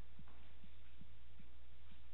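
Steady low electrical hum on the meeting room's microphone feed, with a few faint, soft low thumps.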